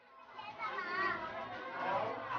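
Young children's voices talking and calling out in high, lively tones, over a faint steady low hum.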